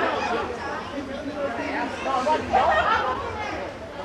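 Indistinct chatter: people talking casually near the microphone, their voices overlapping.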